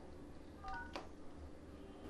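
Faint mobile phone keypad beep: a short electronic tone about two-thirds of a second in, followed by a light click, over quiet room tone.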